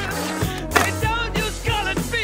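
Skateboard on a concrete skatepark ledge, with a sharp clack of the board about three quarters of a second in. It sits under background music with singing.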